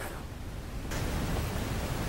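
Steady background hiss with no distinct event, stepping up abruptly about a second in.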